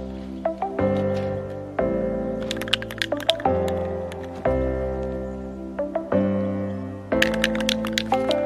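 Background music: held chords changing every second or so, with sharp percussive clicks over them.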